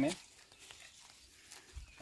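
A man's voice finishing a word as it opens, then faint outdoor background for about a second and a half, with a brief low thump shortly before the talking resumes.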